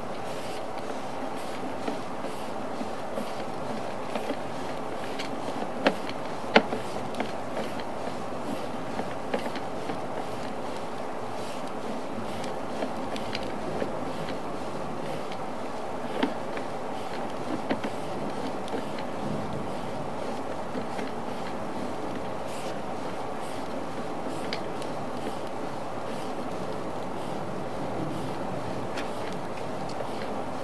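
Sewer inspection camera's push cable being pulled back through the pipe: a steady rushing noise with scattered sharp clicks and knocks, the loudest two about six seconds in.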